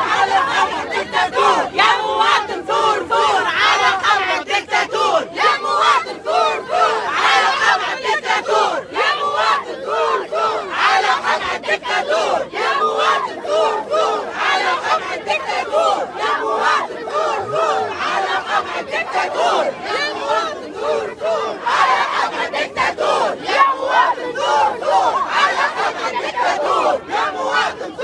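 A loud crowd of protesters shouting slogans together, many voices overlapping without a break.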